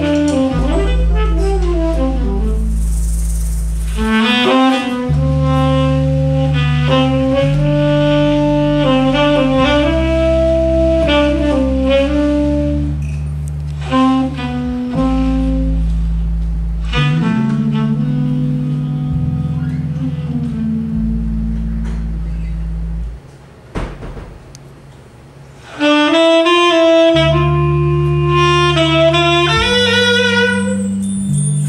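Live jazz band playing, a saxophone leading with long held notes over electric bass, drum kit and keyboard. About three-quarters of the way through the band drops to a quiet moment, then comes back in at full volume.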